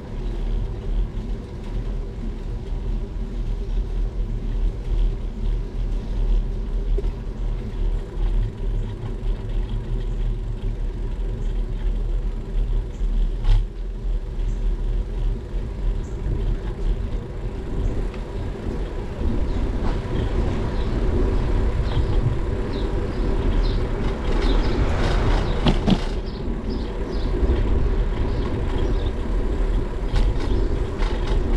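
Wind rumbling on a GoPro's microphone during a slow bicycle ride, with steady road noise from the bike rolling over asphalt. There is a single sharp click about halfway through and a brief louder, hissier stretch a little before the end.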